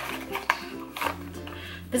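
Soft background music of sustained low notes that shift about a second in, with three short clicks about half a second apart as a small jar is handled out of its cardboard box.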